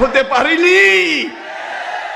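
Speech only: a man preaching emphatically, drawing out one long word that rises and then falls in pitch. The voice drops quieter for the last moment.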